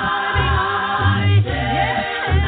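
A cappella gospel vocal group singing unaccompanied close harmony, with a deep bass voice holding low notes beneath the upper parts.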